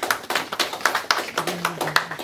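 Scattered hand claps from a few people in an audience, a loose run of sharp, separate claps several a second rather than a full round of applause.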